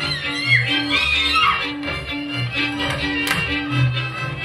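Czech folk dance music played live by a folk band. A fiddle carries a quick, ornamented melody over short, evenly repeated bass and accompaniment notes, with one sharp knock about three seconds in.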